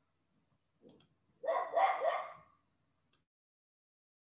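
A dog barking twice in quick succession about a second and a half in, heard through an online call's audio, with a faint short sound just before.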